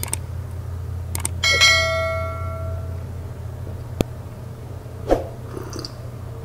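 Subscribe-button animation sound effect: mouse clicks, then about a second and a half in a bright notification-bell ding that rings out for over a second. Two short clicks follow later, over a steady low hum.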